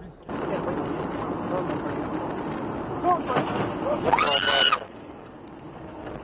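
Steady road and cabin noise inside a moving car, with a person's voice crying out around three seconds in and rising to a high shriek about four seconds in. The noise then drops off sharply.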